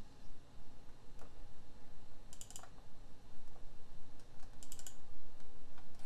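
Sharp clicks of a laptop being worked by hand, its keys or touchpad pressed: one click about a second in, then short runs of several clicks around two and a half seconds and again near five seconds.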